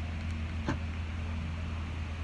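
Steady low hum of an idling car engine, with a single sharp click about two-thirds of a second in.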